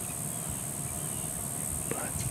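Outdoor ambience of insects droning steadily at a high pitch, with a low rumble beneath and a faint click near the end.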